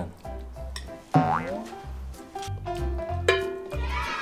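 Background music with a steady bass beat, with a cartoon 'boing' sound effect about a second in and a bright, ringing sound effect near the end.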